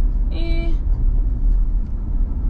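Steady low road and engine rumble inside a moving car's cabin, with one short, steady-pitched sound lasting under half a second about a third of a second in.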